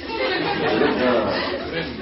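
Several voices talking over one another in a large room, a class calling out answers to a question.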